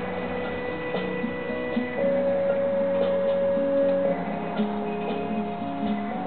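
Instrumental interlude of a slow folk ballad: long held melody notes that step from one pitch to the next over a soft accompaniment, with faint light ticks.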